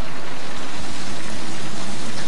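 Steady, even hiss of noise.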